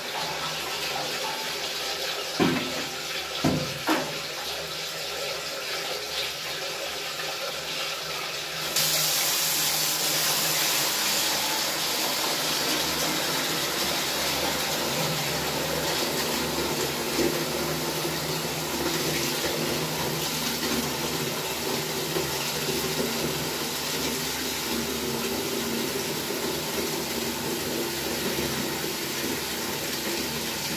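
Tap water running steadily into a container, growing louder and hissier about nine seconds in as the flow is turned up. A couple of short knocks come a few seconds in.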